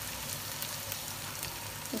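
Onions, ginger-garlic paste and yogurt sizzling in oil in a frying pan: a steady, fairly quiet sizzle with faint scattered crackles.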